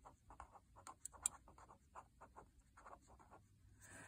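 Faint scratching of a pen writing a word on lined paper: a run of short, quiet strokes, one a little louder just after a second in.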